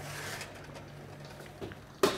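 Quiet handling sounds as a metal oven tray of hot glass jars is lifted out of the oven, over a low steady hum, with a faint knock near the end.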